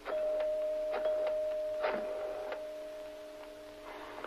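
A telephone handset is lifted and handled, giving a few sharp clicks, over one steady tone that starts as the handset comes up and fades slowly.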